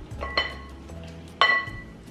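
Two sharp clinks of metal kitchenware, the sieve and whisk, against a glass mixing bowl while flour is sifted in. Each rings briefly, the second louder, about a second after the first.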